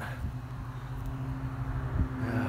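A steady low motor hum with one constant tone above it.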